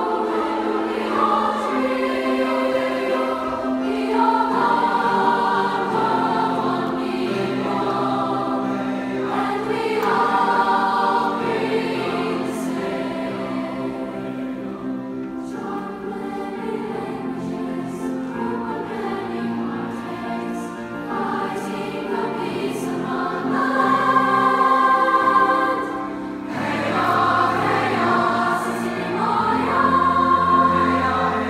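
Large middle-school choir singing sustained chords with piano accompaniment. The singing swells louder a few seconds before the end, dips briefly, then comes back in strongly.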